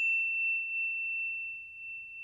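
The ringing tail of a single high bell-like ding, a sound effect: one clear, steady high tone that slowly fades.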